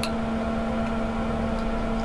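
A steady mechanical hum with a constant low tone, no strokes or changes in it.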